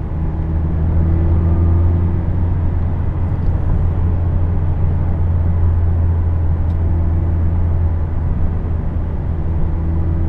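In-cabin sound of a 2017 Mazda Miata RF four-cylinder engine driving on the road: a steady low engine drone mixed with road noise. It rises slightly in pitch and level in the first couple of seconds, then holds steady as the car cruises.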